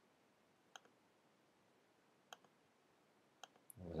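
Faint computer mouse clicks, about four of them spaced a second or so apart, with near silence in between. Speech begins at the very end.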